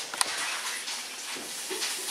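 Steady background hiss with a faint click shortly after the start.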